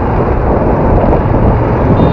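Motorbike on the move in city traffic: a steady, loud rumble of engine, road and wind noise.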